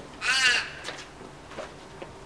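A single crow caw, one short arched call about a quarter of a second in, followed by faint outdoor background.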